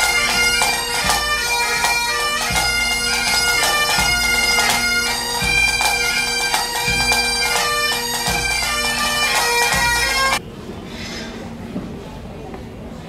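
Pipe band of Highland bagpipes playing a tune over their steady drones, with a bass drum beating about every second and a half. The music cuts off suddenly near the end, leaving a much quieter hall murmur.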